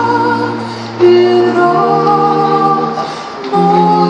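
Mixed a cappella vocal ensemble singing held chords in several parts, a low bass line under the upper voices. New phrases start about a second in and again near the end.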